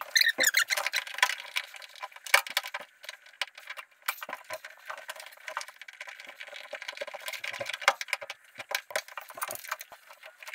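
Irregular small metal clicks, clinks and rattles from hands working on the fuel hose fittings under the truck: pushing the lines onto the fuel pump sending unit's outlets and working a screwdriver on the fittings.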